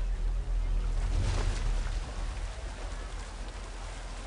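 Rushing water with a steady low rumble underneath, swelling about a second in and easing off after the second second.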